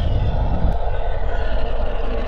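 Sound effect for an animated intro: a loud, steady rumbling roar with a hiss on top, with a small click under a second in.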